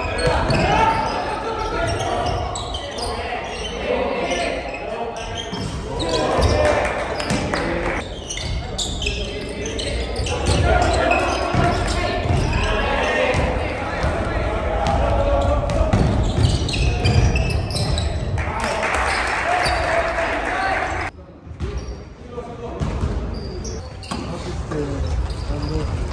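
Live sound of a basketball game in a gym: the ball bouncing on the wooden court, with players' voices calling out, echoing in the large hall. The sound drops away briefly near the end.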